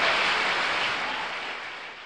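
A cymbal ringing out at the end of a jazz backing track: a bright hiss that swells at the start and then fades steadily away.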